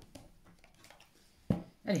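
Quiet handling of a small deck of Lenormand cards, with faint clicks and one sharp tap about one and a half seconds in as the deck is picked up off the table.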